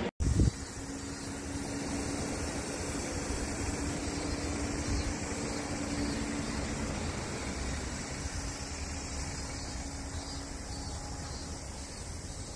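Steady outdoor background rumble and hiss with a faint low hum. A short thump comes just after a brief dropout at the very start.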